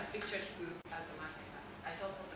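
Faint, indistinct voices of women talking and murmuring in a room.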